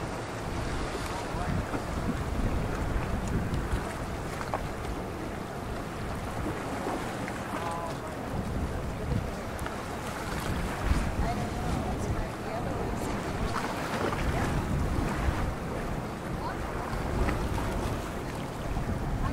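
Wind buffeting the microphone over choppy open sea, with the wash of waves.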